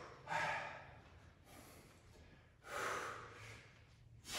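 A man breathing hard with exertion during a set of Russian twists: two heavy breaths, one just after the start and one about three seconds in, with quiet between them.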